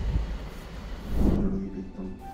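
Low rumble of a slow-moving car heard from inside its cabin, fading after about a second. A brief voice follows, then the sound cuts to a quieter room.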